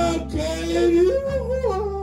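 Blues harmonica playing bent, wavering notes that climb in pitch over the band's low, steady backing.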